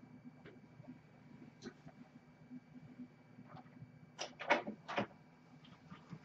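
Quiet room tone with a faint steady electrical hum, then a short run of knocks and clatter a little after four seconds in.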